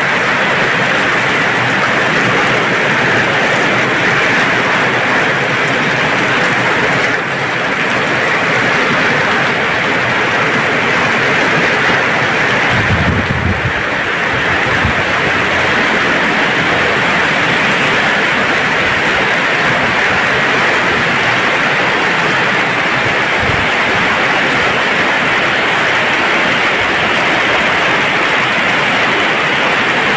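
Heavy tropical rain pouring down in a steady, loud hiss, with a brief low rumble about halfway through.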